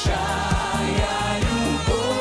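Live pop band playing with male and female voices singing together over a steady drum beat.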